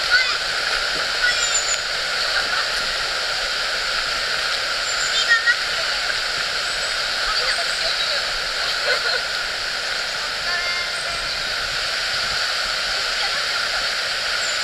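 A river running steadily beside the path: a constant, even rush of flowing water.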